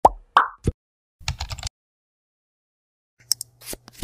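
Logo-animation sound effects: three quick plops in the first second, a short rattle of clicks, then silence before a few more clicks and a brief hiss near the end.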